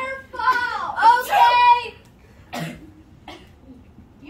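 A child's high voice making wordless sounds that slide up and down in pitch for about two seconds, followed by two short breathy bursts, like coughs or huffs, in the quieter second half.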